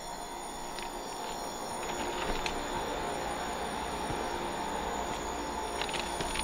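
Speno rotary rail-grinding train running and grinding the rails: a steady grinding noise with a faint hum, slightly louder from about two seconds in.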